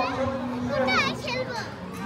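A young child's high-pitched voice, a short run of rising and falling calls about a second in, over a steady low hum.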